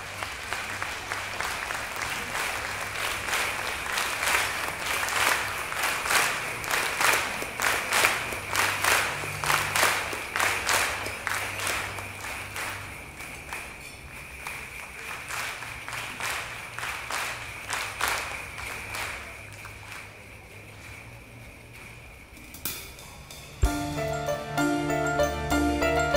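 Many people clapping together in a steady rhythm, about two claps a second, building up and then fading away. Just before the end a sharp low thump comes, and an orchestra begins to play.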